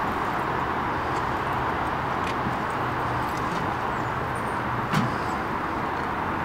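Steady outdoor noise of traffic, with a few light clicks and a single knock about five seconds in.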